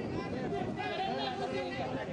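Several people talking at once, their voices overlapping into indistinct chatter.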